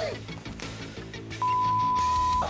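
Faint background music, then about one and a half seconds in a steady, single-pitch beep starts and holds: a broadcast test tone sounding over colour bars.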